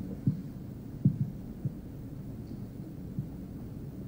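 A few soft, low thumps at irregular intervals over a steady low hum: handling noise from a live handheld microphone running through a hall's sound system.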